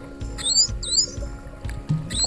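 Background music with steady held tones. A pair of short high chirping sweeps comes through about half a second in.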